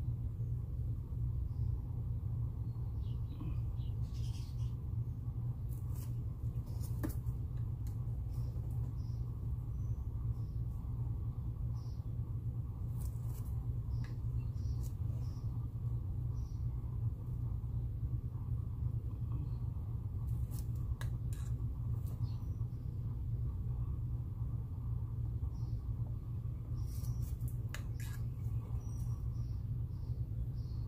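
A steady low hum of room background, with faint, scattered light clicks and taps from a small brush dabbing glitter onto a wet acrylic pour painting.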